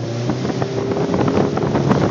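Motorboat engine running at speed, with wind buffeting the phone's microphone and frequent short knocks, the level rising a little toward the end.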